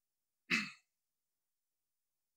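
A single short exhale from the lecturer about half a second in, fading quickly; the rest is silence.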